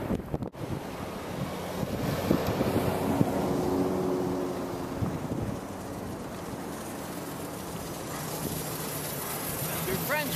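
Steady outdoor noise with wind on the microphone and a low hum that swells and fades over the first few seconds.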